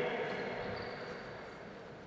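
The echo of a man's voice dying away in a large sports hall, fading into faint room noise.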